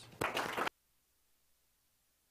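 Audience applause starting, then cut off abruptly under a second in, leaving near silence.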